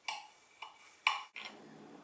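Paring knife cutting through set agar-agar dessert and touching the glass baking dish: a few light clicks, the loudest about a second in.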